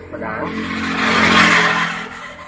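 A motor vehicle passing close by: its engine and road noise swell to a peak about a second and a half in, then fade.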